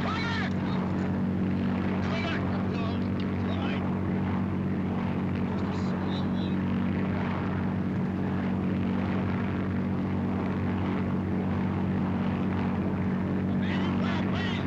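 Steady engine drone heard from inside a vehicle's cabin, unbroken and even in level, with brief voice sounds over it now and then.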